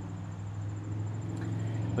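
Steady low background hum, growing slightly louder, with no distinct sound event.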